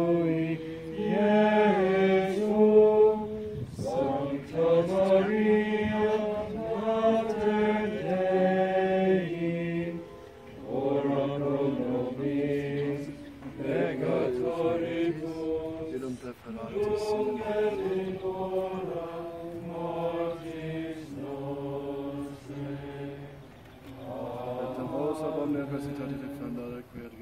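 A priest's voice intoning Latin prayers on a few held notes, in phrases of a second or two with short breaks; after about ten seconds the pitch sits lower. These are the prayers for enrolling children in the brown scapular.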